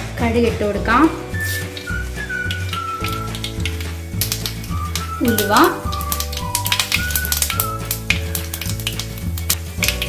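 Mustard seeds crackling and sizzling in hot coconut oil in a clay pot, with many sharp pops, under background music with gliding melody notes and a steady bass beat.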